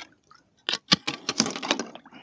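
Thin sheet ice on a stock tank cracking and snapping as it is broken up by hand and lifted out of the water, a run of sharp cracks starting a little under a second in.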